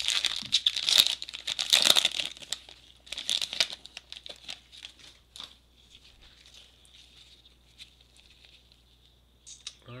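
Foil trading-card pack wrapper torn open and crinkled, loudest in the first two and a half seconds and again about three seconds in. After that, faint ticks and rustles as the stack of cards is handled.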